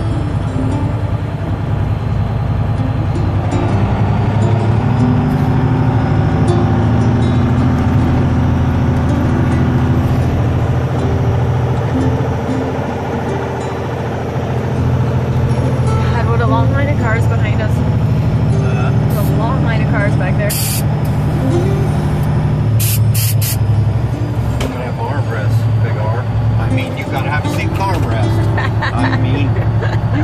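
Steady low drone of a big truck's engine heard inside the cab, with a song with singing playing over it. There are a few brief, sharp high-pitched sounds around the middle.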